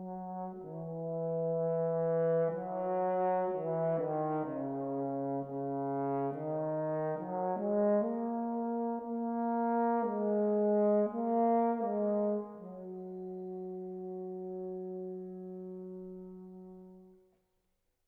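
Solo French horn playing a slow, unaccompanied melody of sustained notes in its middle-low register, ending on a long held note that fades out shortly before the end.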